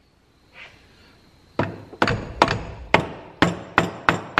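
A soft-faced mallet tapping the aluminium timing cover of a Norton Commando engine, to break the cover loose before it is pulled off. The taps start about a second and a half in and come about two a second, six sharp knocks in all.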